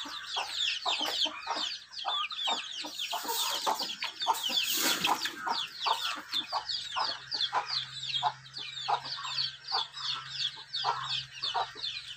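Many young chicks peeping together: a dense, unbroken chorus of short, high, falling cheeps, with a brief rustling noise around the middle.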